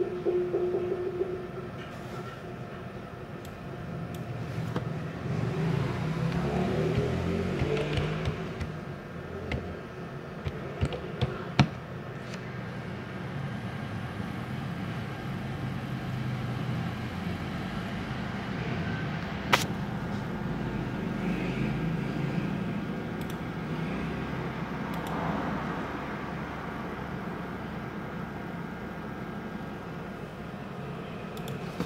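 A few sharp clicks of computer keys and a mouse, bunched about a third of the way in with one more about two-thirds in, over a steady low rumble of background noise.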